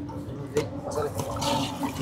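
Steel ladle stirring a thin, watery curry in a large aluminium pot, the liquid sloshing around the pot.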